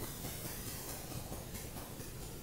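Faint, steady hiss of a marker writing on a glass lightboard.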